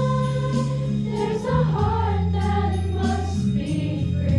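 A children's choir singing a sustained, slow melody in unison, with long-held low notes of an accompaniment underneath.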